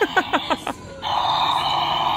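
A short laugh, then about a second in a Billy Butcherson Sidestepper Halloween animatronic, switched on by its Try Me button, starts its steady, thin, tinny sound through a small built-in speaker.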